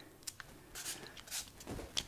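Acrylic markers and pencils being handled and set down on a plastic-covered table: a few faint, short rustles and light knocks about half a second apart.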